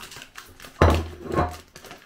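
A thump and handling noise about a second in, with a smaller knock shortly after, as a loaf cake is pushed back into its packaging.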